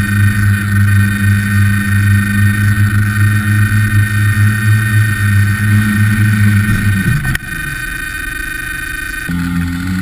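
Tricopter's three electric motors and propellers humming steadily in a low hover, heard from a camera on the craft itself. About seven seconds in, the pitch drops as the throttle comes down and the craft sets down with a knock. The motors then keep running, quieter.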